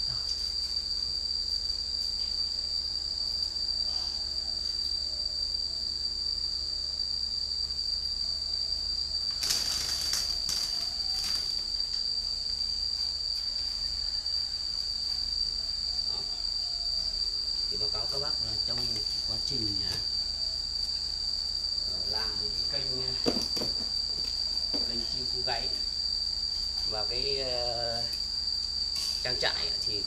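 A steady, high-pitched whine that holds one pitch throughout, with fainter wavering sounds coming and going in the second half.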